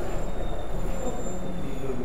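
A steady, high-pitched squeal lasting almost two seconds, over a constant low background rumble.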